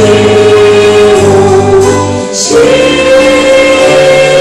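A female lead singer and a choir of women's voices singing long held notes with a small ensemble of piano and strings, moving to a new chord about two and a half seconds in.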